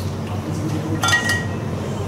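A single short clink about a second in, with a brief ring that dies away quickly, over faint background voices.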